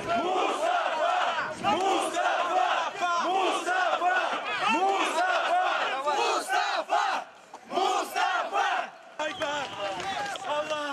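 A large crowd shouting and calling out together, many raised voices overlapping, with a brief lull about seven seconds in.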